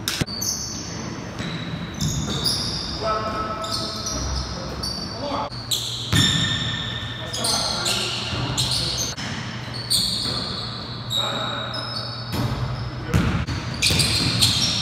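Basketball bouncing and hitting the hardwood floor in short thuds, with high sneaker squeaks and players' voices calling out during a pickup game in a gym.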